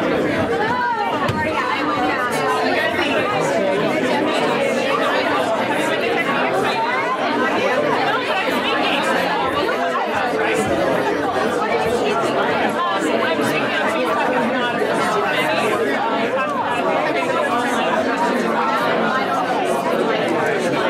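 Many people talking at once, a steady hubbub of overlapping conversations as an audience mingles and introduces themselves.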